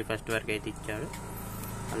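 A man's voice talking for about the first second, then trailing off into a steady background hum with no words.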